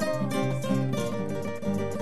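Acoustic guitars playing an instrumental passage of a traditional Mexican song: a run of plucked melody notes over a bass line.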